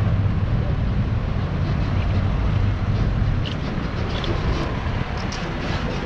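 Steady low rumble of street traffic at an intersection, with wind on the microphone.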